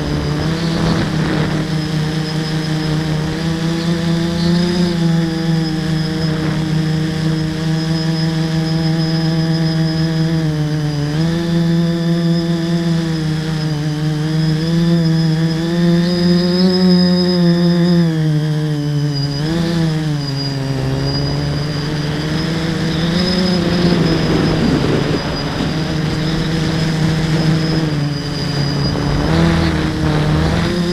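Motors and propellers of a 300-size FPV tricopter, heard from its onboard camera: a buzzing hum whose pitch repeatedly rises and falls as the throttle changes. A thin steady high whine runs above it, and wind rumbles on the microphone, strongest about two-thirds of the way through.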